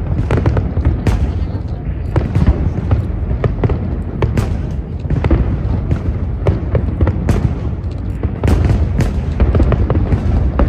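Aerial fireworks bursting in a rapid, irregular run of sharp bangs and crackles over a steady low rumble.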